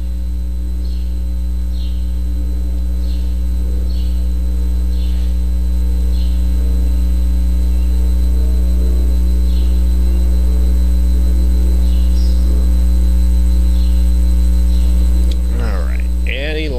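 A loud, steady low electrical mains hum, with faint short high chirps repeating about once a second.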